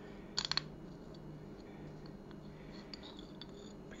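A quick cluster of about four light clicks, then faint small ticks, as the outer cover of an electric linear actuator is slid off its lead-screw and limit-switch assembly.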